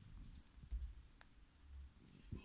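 A few faint, light ticks of a ballpoint pen marking paper on a desk.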